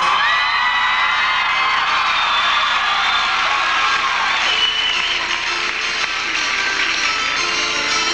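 Live concert audience cheering, whooping and whistling over applause. Plucked harpsichord notes come in beneath it and grow clearer near the end.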